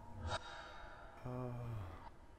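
A man takes a short, sharp breath, then lets out a low, drawn-out "uhh" that sinks in pitch as it ends: a sleepy, hesitant sound.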